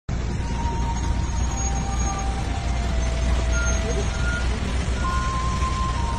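Steady rain noise over the low, even rumble of a vehicle engine.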